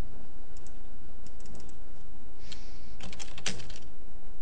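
Typing on a computer keyboard: a few scattered key taps, then a quick run of keystrokes about three seconds in, over a steady low hum.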